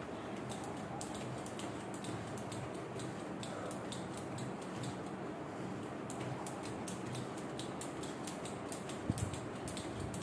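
Speed skipping rope ticking against the floor at a fast, even pace, roughly three or four strikes a second, as the jumper keeps a steady rhythm in a timed speed event. A single louder thump comes about nine seconds in.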